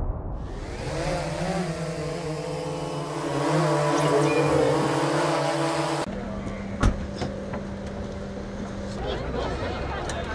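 Camera quadcopter drone's motors and propellers humming in a steady multi-tone whine that wavers slightly, cutting off abruptly about six seconds in. After it come a steady low hum, a single thump and background voices.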